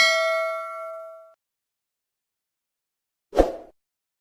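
A notification-bell sound effect: a bright metallic ding with several clear tones, ringing out and fading away within about a second and a half. Near the end, a short swish.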